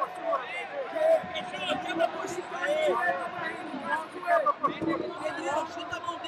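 Overlapping shouting voices of coaches and spectators at a jiu-jitsu match, a crowd babble with no single clear speaker.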